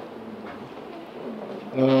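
A pause in a man's sermon with low room noise and a faint bird cooing, then the man starts a drawn-out "ah" near the end.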